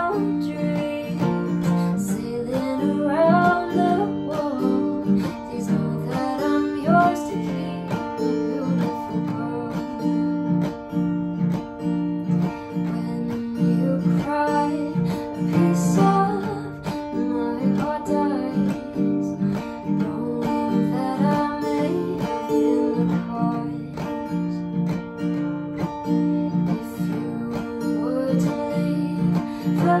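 Acoustic guitar strummed steadily as song accompaniment, with a woman's singing voice coming in at times over the chords.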